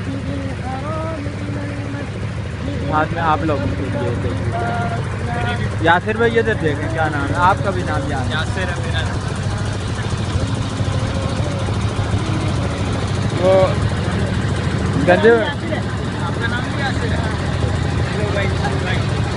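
A wooden passenger boat's engine running steadily under way, a continuous low drone, with men's voices over it at times.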